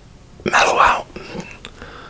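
A man whispering close to the microphone: a short whispered phrase about half a second in, then a few quieter breathy sounds.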